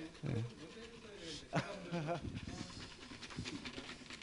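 Low voices with a short breath close to a handheld microphone about a second in.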